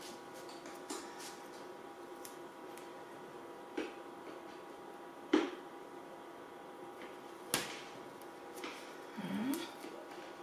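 Ribbon and cardstock being handled on a craft mat: a few light, separate clicks and taps of paper against the mat, the loudest about halfway through, and a short scraping rustle near the end, over a faint steady hum.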